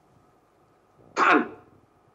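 A man clears his throat once, briefly, a little over a second in.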